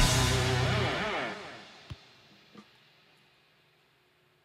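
Live rock band of drums and electric guitars ending a song on a final hit. The chord and cymbals ring out and fade away over about two seconds, followed by a couple of faint clicks and near silence.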